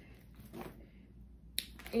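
Mostly quiet, with a faint soft sound about a quarter of the way in and one sharp click shortly before the end.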